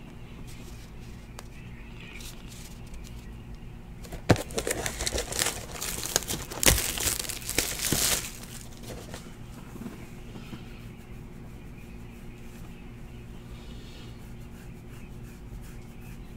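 A sealed 2018 Panini Classics Football hobby box being torn open: a sharp snap, then about four seconds of crinkling and tearing of its wrapping and cardboard. Before and after, only a steady low room hum.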